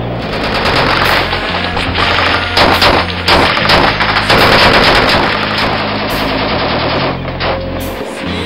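Small-arms gunfire in rapid automatic bursts, shots crowding together and densest from about a second and a half to five seconds in.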